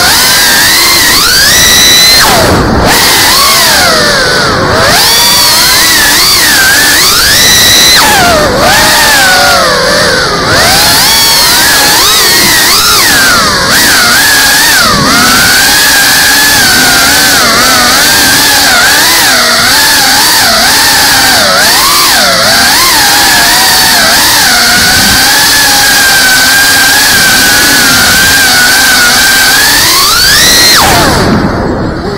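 A Geprc CineLog 35 cinewhoop drone's brushless motors and ducted propellers whining loudly, several tones at once, the pitch rising and falling constantly with throttle.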